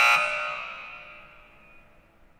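A single ringing tone, several pitches sounding together, loud at the start and fading away over about a second and a half.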